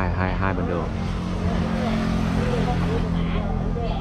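A motor vehicle engine running steadily with a low hum, with people talking in the background.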